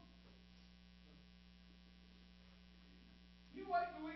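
Steady electrical mains hum in a quiet room, with a voice starting near the end.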